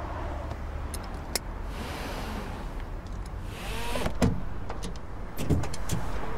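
Sounds of getting out of a Range Rover: a couple of sharp clicks and some rustling, then the car door opening with a clunk just after four seconds in. Low thuds and a quick run of small clicks follow near the end as she steps out.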